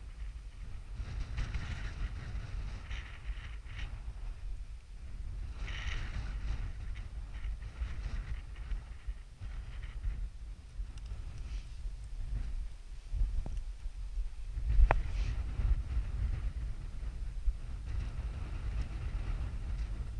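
Wind buffeting the microphone as a steady low rumble, with scattered rustling and one sharp knock about fifteen seconds in.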